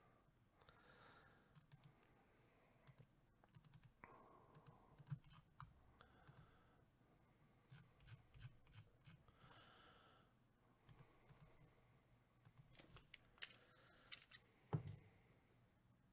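Near silence with faint, scattered computer mouse and keyboard clicks, and one louder click near the end.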